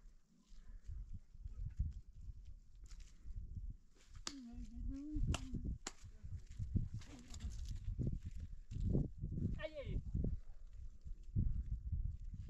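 Constant low rumbling outdoor noise, uneven in level, with a few short calls over it; one call about a third of the way in is held for about a second.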